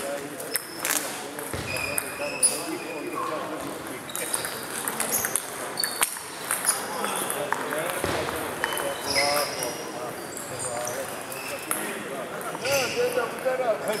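Celluloid-type table tennis ball clicking off paddles and table during a rally, with further ball strikes echoing from elsewhere in a large hall, and voices in the background.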